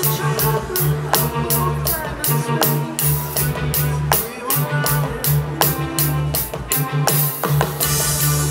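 Rock groove played on Zildjian Gen16 AE perforated cymbals, picked up by direct-source pickups and shaped through the DCP processor, with steady cymbal strokes about four a second and drums. A backing track with guitar and bass plays along.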